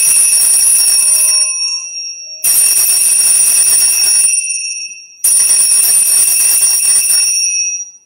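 Altar bells rung three times, each ring a bright, high jingling that lasts about two seconds and fades. They mark the elevation of the host at the consecration.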